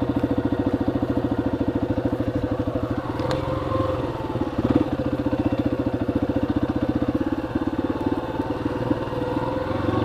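Yamaha XT250's single-cylinder four-stroke engine running as the bike is ridden, with an even rapid pulse. The engine note shifts about three seconds in and again about seven and a half seconds in as the throttle changes.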